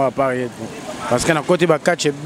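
Only speech: a voice talking, with a short pause near the middle.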